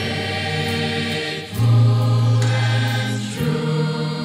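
Mixed choir of men and women singing together in sustained chords, the harmony moving to new notes about one and a half seconds in and again near the end.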